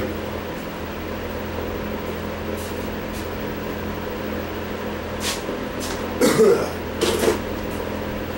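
Steady electrical hum and fan-like noise in a workshop, with a few brief knocks and clattering sounds about five to seven seconds in.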